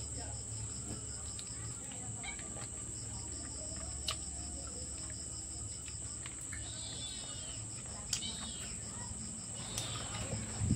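Crickets: a steady, high-pitched insect drone, joined for a few seconds in the middle by a faster pulsing trill, with a few faint clicks.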